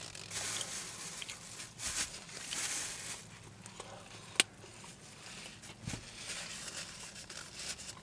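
Paper napkins and food wrappers rustling and crinkling as they are handled, most in the first three seconds, with one sharp click a little over four seconds in.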